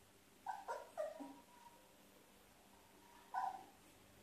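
Labrador puppy whimpering: three short, high calls in quick succession about half a second in, then one more near the end.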